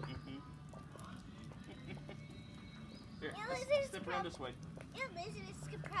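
Quiet, indistinct voices talking about three seconds in and again near the end, over a faint steady low hum.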